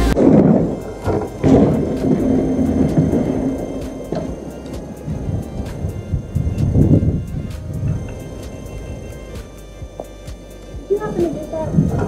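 Indistinct voices in the open air, rising and falling irregularly, with a man saying "yeah" near the end.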